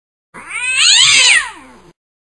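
A cat's single long meow, rising and then falling in pitch, loud in the middle and tailing off near the end.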